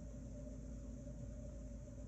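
Faint steady hiss with a low hum: room tone.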